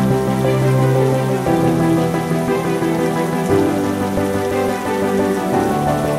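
Steady rain mixed with slow, soft background music whose sustained chords change about every two seconds.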